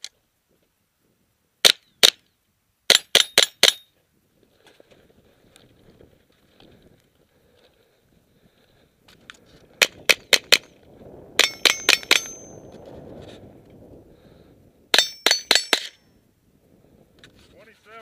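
Ruger 10/22 semi-automatic .22 rifle fired in quick strings: a pair of shots, then four volleys of about five rapid shots each, a few seconds apart. Some shots are followed by a brief high ringing, as from hits on steel plate targets.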